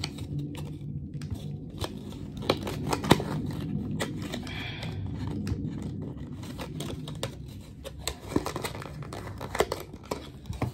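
A small cardboard perfume sample box being handled and opened by hand: scattered clicks, taps and paper rustling and tearing as the flap is worked open.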